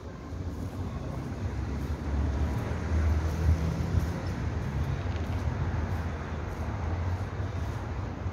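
Steady low rumble of outdoor city background noise with no single clear event. It gets a little louder from about two seconds in.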